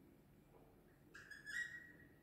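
Dry-erase marker squeaking against a whiteboard as letters are written: quiet at first, then a few short high squeaks in the second half, the loudest about a second and a half in.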